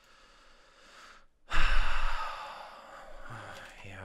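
A woman's long, exasperated sigh blown close into a headset microphone. A faint intake of breath comes first, then a loud exhale about one and a half seconds in that makes the microphone rumble and fades away over a second or so. A low voiced sound follows near the end.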